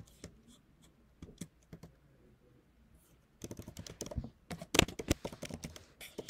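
Typing on a computer keyboard: a few scattered keystrokes, then a fast run of clicks through the last couple of seconds.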